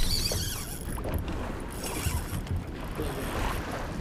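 Steady wind and sea-water noise on an open boat.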